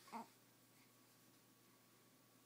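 A young baby's single short coo just after the start, then near silence.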